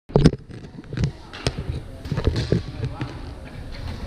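Scattered sharp cracks of badminton rackets hitting shuttlecocks, with a few thuds, echoing in a large gym hall, and players' voices in the background. The loudest knock comes right at the start.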